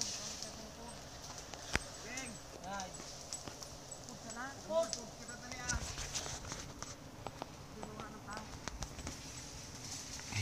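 Faint voices of people calling out at a distance, with scattered close clicks and knocks, the loudest a sharp click just under two seconds in, over a steady high hiss.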